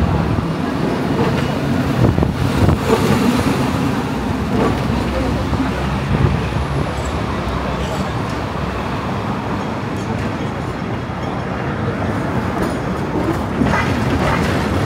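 Hong Kong double-decker electric tram running along the street, heard from on board, with street traffic around it.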